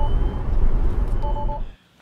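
Channel logo intro sting: a deep rumble with a quick run of three short electronic beeps just past a second in, then the sound cuts off abruptly near the end.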